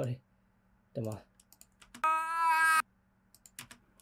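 Short vocal sounds from an animated film's soundtrack played back in a mixing session: a brief grunt about a second in, then a louder held sound at one steady pitch for nearly a second, with a few computer keyboard clicks in between.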